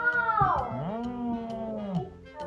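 A child's long, drawn-out excited exclamation with no words, like a "wooow". It starts high, slides down in pitch over the first second, then is held for about another second.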